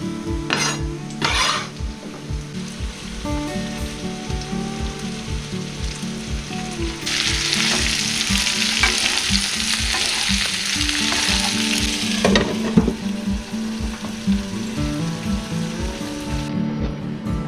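Chopped bell peppers sizzling in a hot frying pan while being stirred with a wooden spatula. The sizzle turns loud and dense about halfway through, then cuts off suddenly after about five seconds, followed by a few clatters. Background music with a steady beat runs underneath, with a few sharp knocks near the start.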